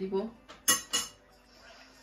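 Kitchen utensils clinking: three sharp clinks within about half a second, the middle one loudest, as things are handled to add sugar to the blender jar.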